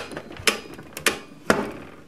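Pie Face game's plastic crank handle being turned, clicking about twice a second, one click per turn.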